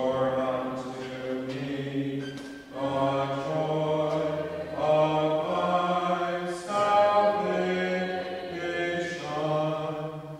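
Unaccompanied congregational singing of a hymn with no organ, the pitch guessed without a pitch pipe. Slow phrases of held notes, with short breaks between phrases about every four seconds.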